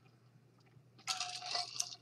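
A man taking a noisy sip from a metal tumbler, starting about a second in.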